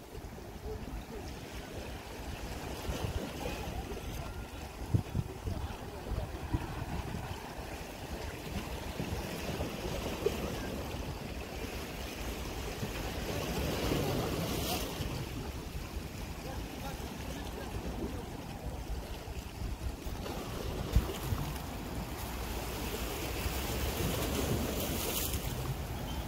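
Wind rushing over the microphone above the wash of small sea waves on shoreline rocks, with a few brief knocks.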